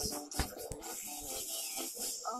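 Music playing through laptop speakers, with a few sharp clicks in the first second, then a steady scraping, rustling noise.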